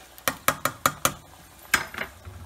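A spoon knocking against the side and rim of a cooking pot while stirring a thick sauce: a quick run of about six knocks in the first second, then one more near the end.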